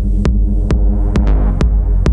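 Techno from a DJ mix: a deep sustained bass with a buzzy synth chord over it, and a sharp percussive hit about twice a second (roughly 133 beats a minute).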